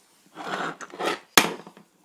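Handling noise from a metal CO2 airsoft pistol: rubbing and rustling, then a single sharp click a little past halfway.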